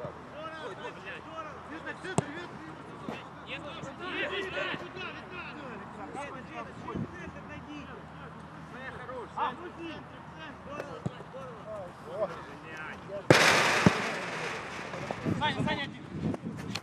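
Footballers' shouted calls across an outdoor pitch during open play, with a few sharp thuds of the ball being kicked. About thirteen seconds in comes a sudden loud rush of noise that fades over about a second.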